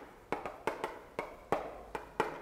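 Chalk tapping and writing on a blackboard: about half a dozen sharp, separate taps spaced irregularly over two seconds.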